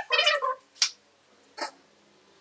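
A cat meowing: a high, bending call that ends about half a second in, followed by two brief noisy bursts.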